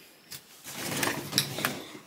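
Handling noise from a handheld camera being moved: the fabric of a sweater rubbing over the microphone, with a few light clicks.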